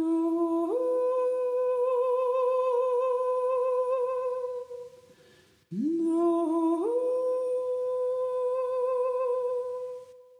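A woman's voice humming two long wordless notes. Each starts on a lower tone and steps up to a higher held note with a slight vibrato. The first fades out about halfway through, and the second begins shortly after.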